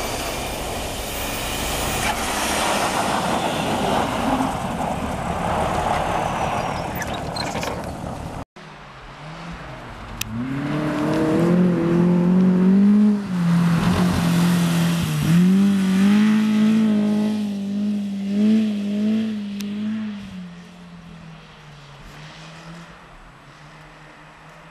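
Cars on a snowy ice track. First a car's engine runs under heavy hiss. After a sudden cut about eight seconds in, a small classic car's engine revs up and down several times as it slides through the corner, then fades near the end as the car pulls away.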